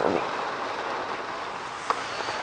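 Steady hiss of rain falling on a car, with a short click near the end.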